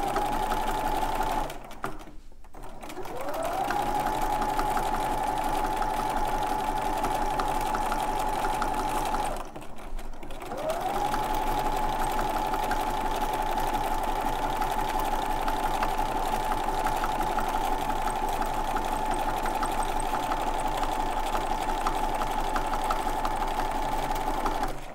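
Bernina domestic sewing machine stitching at a steady high speed through a quilt sandwich, with rapid ticking of the needle over the motor whine. It stops briefly twice, about two seconds in and again about ten seconds in, and each time the motor winds back up with a rising whine.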